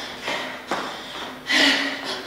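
A person breathing out hard in a few short, breathy bursts during exercise, the loudest about one and a half seconds in.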